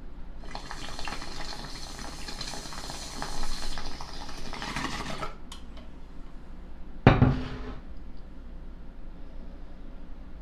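Glass bong bubbling as smoke is drawn through its water, for about five seconds, then a short loud burst about seven seconds in.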